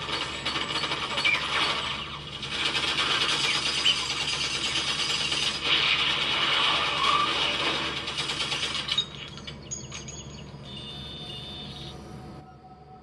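Movie battle soundtrack: a dense clatter of rapid gunfire and blasts. About nine seconds in it drops to quieter electronic beeps and tones.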